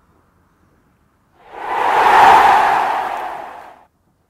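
Whoosh transition sound effect: a loud swell of noise about a second and a half in that builds quickly, then fades over about two seconds and stops abruptly.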